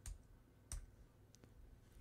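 Faint clicks from a computer being operated, most likely advancing the slide. Two sharp clicks come about two-thirds of a second apart, then a softer tick, with near silence around them.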